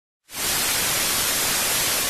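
Loud, steady static hiss like white noise, starting suddenly out of dead silence about a quarter of a second in.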